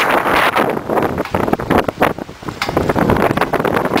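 Wind buffeting the camera microphone in loud, rough gusts that rise and fall throughout.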